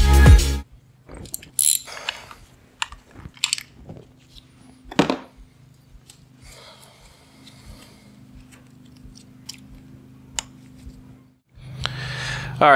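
Electronic music cuts off, then gloved hands work on an outboard motor's powerhead: scattered sharp clicks and short crackly handling noises from its hoses and fittings, the loudest about five seconds in, over a faint steady hum.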